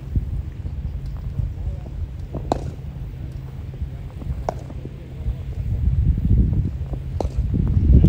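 Wind rumbling on the microphone with faint voices in the background, and three sharp knocks about two seconds apart. The rumble grows louder near the end.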